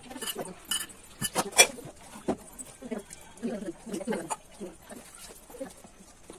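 A metal spoon clinking against a small steel bowl and plate, several sharp clinks in the first two seconds, with low murmured voices later on.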